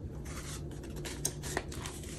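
Paper banknotes rustling as they are handled and slipped into a clear plastic zippered cash envelope, with a few light, crisp clicks.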